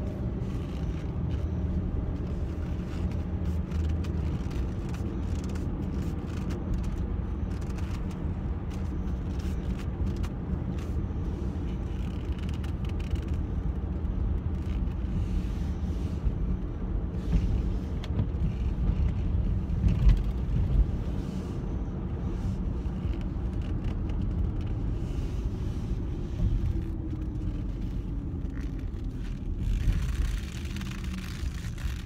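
Car cabin noise while driving: a steady low road-and-engine rumble, with a louder bump about two-thirds of the way in and the engine note sliding down near the end. Over it come faint creaks and rubs of black leather gloves gripping the steering wheel cover.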